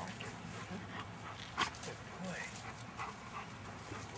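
Yellow Labrador Retriever walking on a leash beside its handler over grass, with scattered small clicks and one sharper click about a second and a half in.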